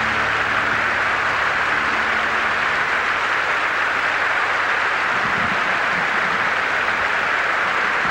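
A large audience applauding steadily. The final held chord of the orchestral accompaniment fades out under it in the first few seconds.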